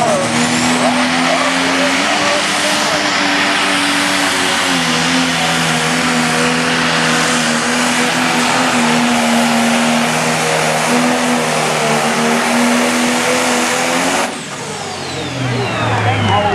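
Turbocharged diesel engine of a 10,000 lb Pro Stock pulling tractor running at full throttle under load as it drags the weight-transfer sled, its note holding nearly steady with a few small drops in pitch. About fourteen seconds in the throttle is cut suddenly at the end of the pull, leaving a falling whistle as the turbo spools down.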